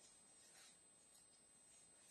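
Near silence, with a faint, brief rustle of satin fabric being handled about half a second in.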